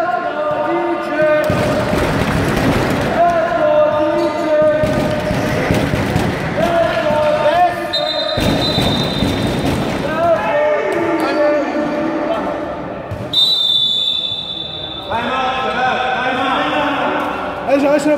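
Basketball being dribbled on a gym floor amid shouting voices echoing in the hall. A high whistle blows briefly about eight seconds in and again, longer, about thirteen seconds in, followed by a stoppage in play.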